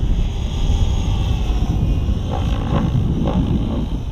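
Wind noise buffeting the microphone, loud and low, over the faint steady sound of an Align T-Rex 760X electric RC helicopter flying at low head speed.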